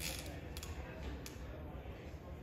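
A conventional fishing reel being handled and worked by hand, its mechanism giving faint creaks and a few scattered clicks.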